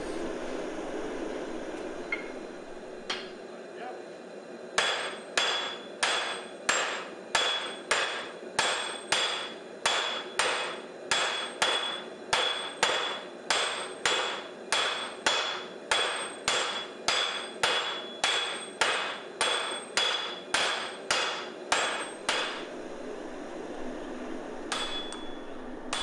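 A forge burner running steadily for the first few seconds. Then sledgehammers strike red-hot steel in a fast, even rhythm, a little over two blows a second, each with a short metallic ring: two strikers hitting in turn. The hammering stops a few seconds before the end, with a couple of last blows.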